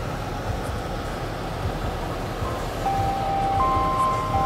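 Steady rumble of a car heard from inside the cabin, engine and road noise with low thumps. Near the end a few held, bell-like music notes fade in over it.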